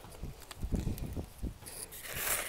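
A few soft, irregular low knocks and rustles as a gloved hand works in a plastic basin of fertilizer pellets, about to scatter them over grass mulch.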